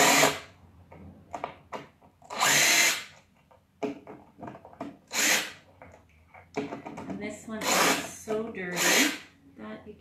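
Cordless drill-driver running in five short bursts, backing screws out of an old wooden table base; the longest run comes about two and a half seconds in.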